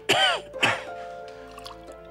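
A man coughs and splutters twice, the first longer with a falling pitch and the second shorter, as he reacts to the sharp smell of cologne held under his nose. Soft background music with held notes follows.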